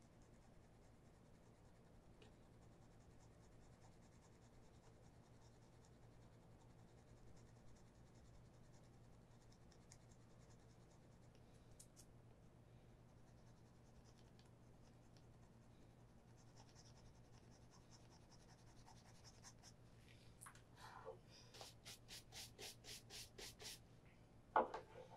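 Faint scratching and rubbing of hands working at the heel edge of a leather shoe, close to silence. About 20 seconds in, a run of quick, even strokes starts, about three a second.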